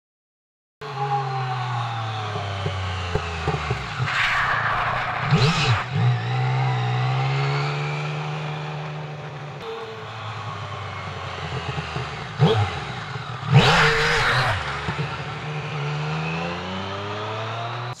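Yamaha Tracer sport-touring motorcycle ridden hard past the roadside, its engine revving up and down as the throttle is opened on a sandy corner to make the rear tyre lose traction. It starts after a moment of silence, with two louder rushes of noise, about four seconds in and again about two-thirds of the way through.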